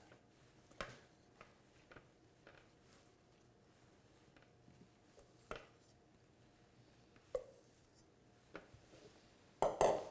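Sparse, soft clicks and taps as marinated mushroom slices are laid by gloved hand onto a metal sheet pan from a stainless steel bowl, with the clearest tap about halfway through.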